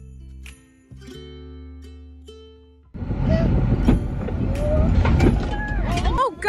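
Background music of plucked, bell-like tones, replaced about three seconds in by the loud, rumbling noise of the Ford F250 pickup truck running close by, with voices faint in it.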